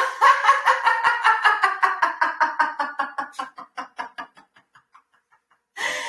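A woman laughing on purpose in a laughter-yoga exercise: a long run of quick 'ha-ha' pulses, about six a second, that fades away as her breath runs out about four and a half seconds in. After a short silence, the laughing starts again just before the end.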